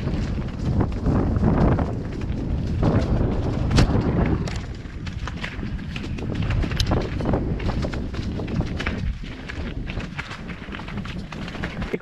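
Mountain bike descending a rocky, loose-stone trail: tyres crunching and clattering over stones with the bike rattling continuously, and sharp knocks as the wheels strike rocks, clearest about four and seven seconds in.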